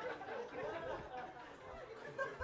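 A seated crowd chattering, several people talking at once at a low level.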